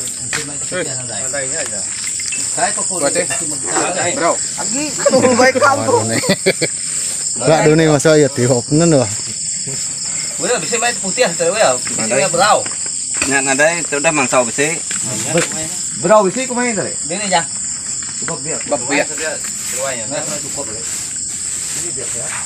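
A steady, high-pitched chorus of night insects runs underneath throughout. People's voices talk indistinctly over it, on and off, and the voices are the loudest sound.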